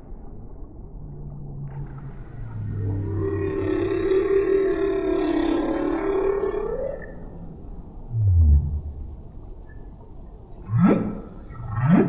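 Humpback whale song: one long pitched call of several seconds that sweeps upward at its end, then a short low call falling in pitch, then two quick upward-sweeping whoops near the end.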